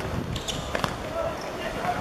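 A few sharp thuds of a football being kicked during open play, over scattered shouting from players.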